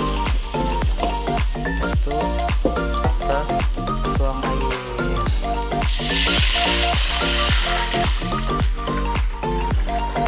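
Spice paste frying and sizzling in hot oil in a wok under background music with a steady beat; about six seconds in the sizzle gets much louder for about two seconds, as water goes into the hot oil.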